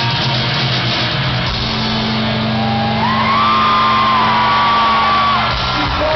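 Live rock band heard from within the audience: distorted electric guitars and bass hold a long sustained chord that breaks off about five and a half seconds in. A whoop from the crowd rises over it.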